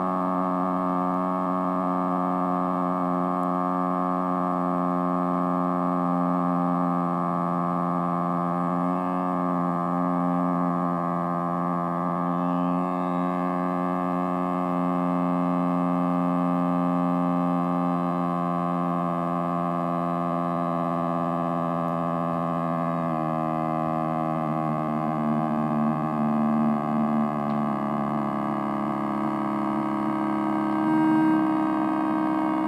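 Solar-powered, batteryless electronic musical instrument, running on its supercapacitor, playing a steady drone of several held tones layered together. The pitches shift about 23 seconds in and waver near the end.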